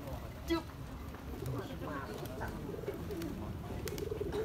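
Pigeons cooing in short low calls, the clearest about half a second in, over a faint murmur of distant voices.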